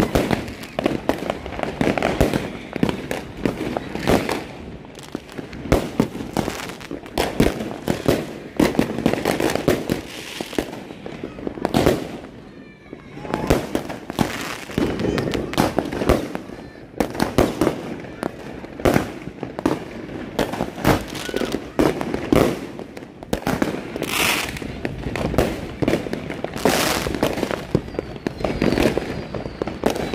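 Many fireworks and firecrackers going off all around at once: a dense string of bangs and crackling pops, several every second, with no break.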